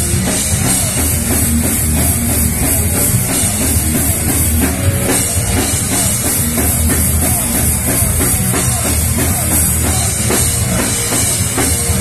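Live metal band playing loud, with dense drum-kit hits and guitars.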